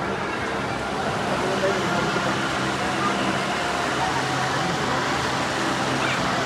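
Steady hubbub of a large crowd: many voices talking at once over a constant background din, with no single voice standing out.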